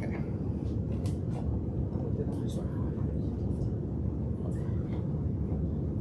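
Steady low background rumble, with a few faint clicks and knocks of plastic plant pots being handled and set down.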